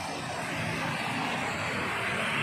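Steady street traffic noise: a motor vehicle running on the road.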